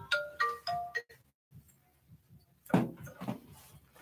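A short electronic melody of a few stepped, pure notes, like a phone ringtone or chime, plays in the first second. After it the sound is mostly near silent, with brief gaps where the audio cuts out completely, and a short faint voice-like sound about three seconds in.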